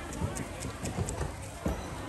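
A fishmonger's cleaver chopping through a large fish onto a chopping board: a run of irregular dull knocks, about half a dozen in two seconds.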